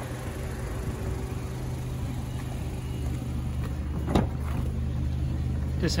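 A 2018 Mazda3's four-cylinder petrol engine idling with a steady low hum. A sharp click about four seconds in, and another near the end, as the rear door latch is opened.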